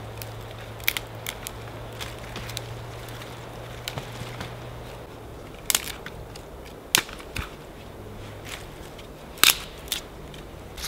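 Dry twigs being snapped by hand for kindling: a string of sharp, irregularly spaced cracks, the loudest near the end.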